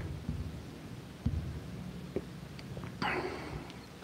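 Quiet room tone with a low steady hum and a few faint clicks, then a man's soft in-breath about three seconds in.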